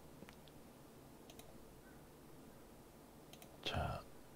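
Faint, scattered clicks of a computer mouse, with a brief voice sound near the end.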